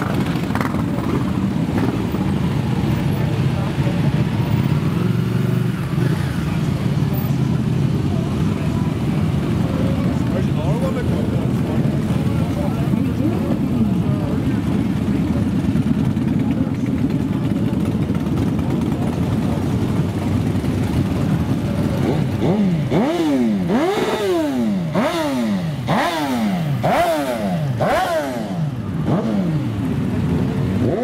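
A procession of motorcycles rides slowly past, their engines running together in a steady rumble. From about two-thirds of the way through, one bike after another revs up and drops back, the engine note climbing and falling again several times in quick succession as they pull away.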